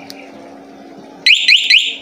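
Bohante motorcycle alarm's siren sounding suddenly about a second in: a loud, fast run of rising chirps, about six or seven a second, as the remote button is held down to enter the vibration-sensor sensitivity setting.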